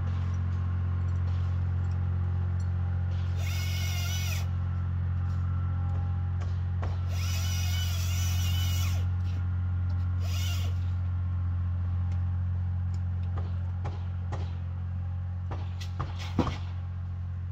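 A chainsaw in three short cutting bursts, about four, seven and ten seconds in, over a steady low engine drone.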